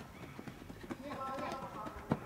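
Players' voices calling out across a baseball field, growing louder about a second in, with a few faint sharp knocks.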